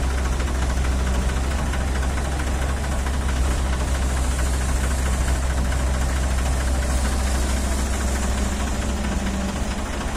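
A JCB 205 tracked excavator's diesel engine runs with a steady low drone as the machine works its hydraulics, swinging and lifting a loaded bucket of rock. Its note firms up briefly a little past the middle as the bucket comes up.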